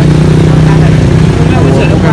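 A small engine idling steadily with a low, even hum, loud, with faint voices over it.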